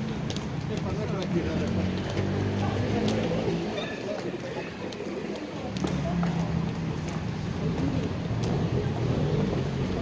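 Indistinct voices of people talking, with footsteps on stone stairs and floor in a pedestrian subway underpass.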